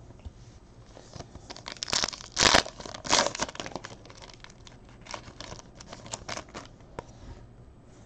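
Trading-card pack wrapper being torn open, with a few bursts of tearing and crinkling about two seconds in, followed by light clicks and rustling as the cards are slid out and handled.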